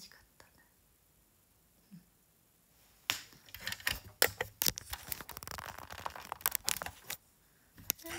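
About three seconds of near silence, then about four seconds of rustling with sharp clicks and knocks from a phone being handled and moved close to its microphone.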